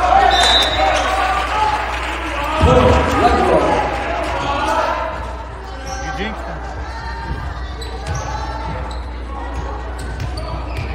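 Volleyball rally in a gym: a ball striking hands and the hardwood floor, with players' and spectators' shouts echoing around the hall. The voices are loudest about three seconds in and die down after the middle.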